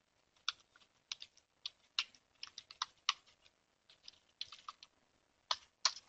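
Typing on a computer keyboard: a run of quick, irregular key clicks, with two louder strokes near the end.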